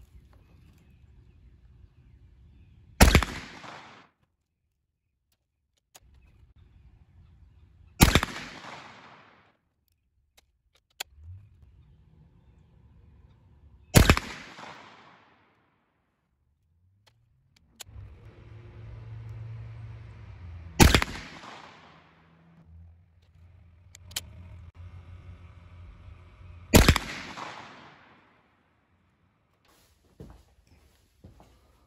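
28-gauge shotgun firing hand-loaded 5/8 oz slugs: five sharp reports about six seconds apart, each trailing off in a short echo. Faint clicks and a low hum fill the gaps between shots.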